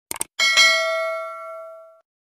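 Subscribe-button animation sound effect: a quick double mouse click, then a notification bell ding with several clear tones that rings on and fades.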